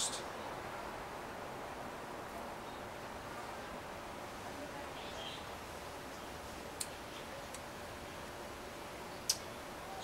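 Quiet outdoor background: a steady low hiss with a faint hum, broken twice late on by short, sharp clicks.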